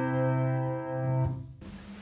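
Grand piano's final chord ringing on and slowly fading, then cut off about one and a half seconds in as the keys are released.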